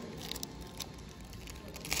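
Foil trading-card pack wrapper being handled, with faint crinkles and clicks, then a brief louder crackle near the end as the wrapper is pulled open.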